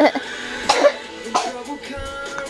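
Three short coughs, about two thirds of a second apart, over faint music.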